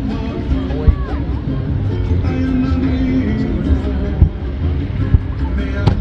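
A song plays throughout, with sharp firework bangs cutting through it: one about a second in and three more in the last two seconds.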